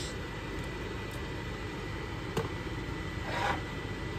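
Steady rushing hum of a fan with a faint high whine, broken by one light click about halfway through.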